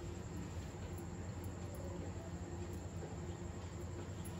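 Steady faint low hum with a light hiss, the background of a stovetop while a pan of milk heats over the burner.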